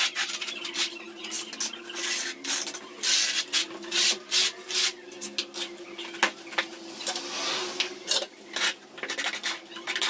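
Notched trowel scraping through tile adhesive on a concrete floor, spreading and combing it in repeated, uneven strokes.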